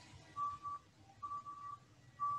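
A faint, thin high-pitched tone that sounds on and off a few times in short pulses, over a quiet background.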